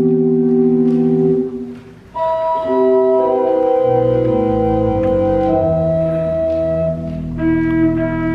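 Organ playing slow, held chords, with a short break in the sound about two seconds in before the next phrase begins.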